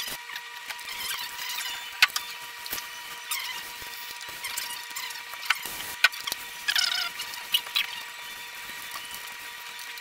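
Ironing board squeaking and creaking as a shirt is smoothed and pressed on it with a small iron: several short squeaks that slide down in pitch, with a few sharp clicks and knocks. A faint steady high hum runs underneath.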